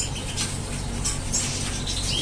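A canary bathing in a plastic bath dish: light, scattered water splashes and wing flutters, over a steady low hum.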